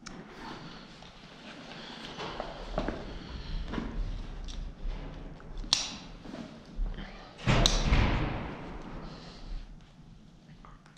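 A bicycle being handled and moved out of a rack: scattered knocks and rattles of the frame, a sharp click past the halfway point, and a loud thump with a rattle about three quarters of the way through.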